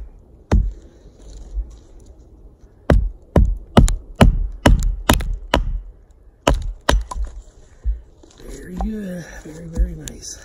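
A wooden baton knocking on the hardened poll of a Council Tool Camp-Carver hatchet, driving the blade down through a hardwood round to split it. There is one knock, then a run of about nine sharp knocks, two to three a second. A man's voice comes near the end.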